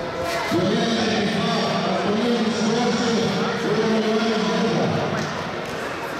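A voice, likely an announcer at the ceremony, speaking in long, drawn-out syllables from about half a second in until about five seconds.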